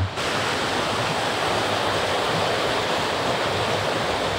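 Steady rushing of a small waterfall and a rocky moorland stream cascading through a gorge.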